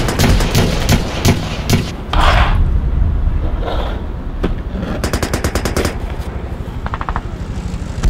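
Battle sound effects of automatic gunfire: scattered shots and machine-gun bursts over a low rumble, with a long rapid burst about five seconds in.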